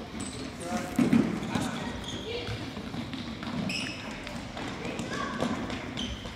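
A soccer ball kicked on a hardwood gym floor, a sharp thud about a second in, with children's indistinct shouts and calls echoing through the hall.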